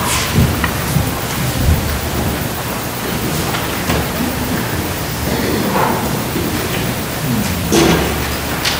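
Steady rustling and shuffling of a church congregation and choir between parts of the service, with a low rumble, a few small knocks and faint voices near the end.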